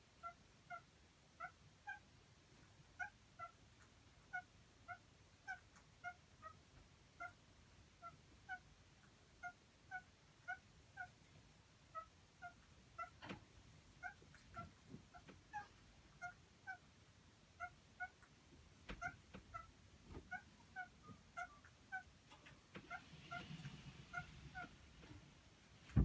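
Indian ringneck parakeets mating, with one bird giving a soft, short call over and over, about two or three notes a second, often in pairs. A few soft knocks come in around the middle.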